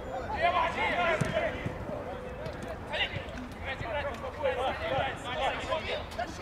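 Footballers shouting to each other across a pitch, with a few dull thumps of a football being kicked.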